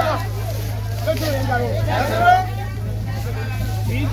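Several people talking over one another, with a steady low hum underneath.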